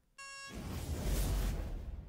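Timer-up sound effect: a short electronic beep lasting about a third of a second, then a noisy whoosh with a deep rumble that swells, holds and tails off near the end.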